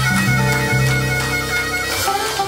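Blues harmonica played cupped into a microphone, holding long sustained notes over a full live band of electric guitar, bass and drums.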